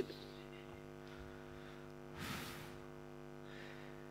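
Faint steady electrical mains hum, with one brief soft hiss about two seconds in.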